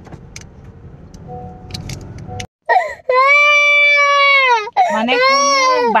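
Low, steady car-cabin road rumble, then, after an abrupt cut, a young child crying loudly in long, drawn-out wails.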